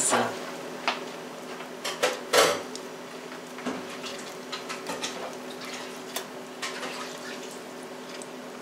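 Soft, scattered taps and small clicks of roasted sweet potatoes being peeled by hand, their skins pulled away and dropped on a plastic cutting mat, with one louder tap about two and a half seconds in. A faint steady hum runs underneath.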